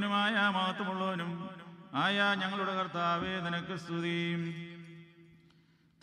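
A man chanting a Syriac Orthodox Good Friday hymn unaccompanied, in a slow, ornamented melody. Two long phrases, the second trailing off to near silence near the end.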